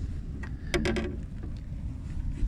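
Steady low rumble of wind on the microphone out on an open kayak, with a few short knocks and a brief voiced sound a little before the middle.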